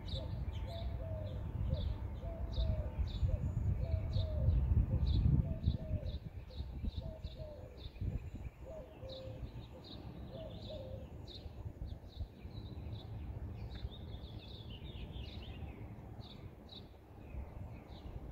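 A dove cooing from a chimney cap: a run of short, low coos about a second apart that stops about eleven seconds in. High chirping runs throughout over a low rumble of background noise.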